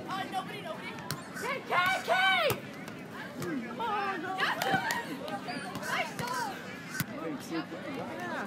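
Players' voices calling out during a beach volleyball rally, loudest about two seconds in, with a few sharp slaps of hands striking the volleyball, one of them clear near the end.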